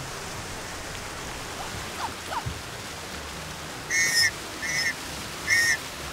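Steady splashing of a water fountain's jets. From about four seconds in, a bright chime-like tone sounds three times.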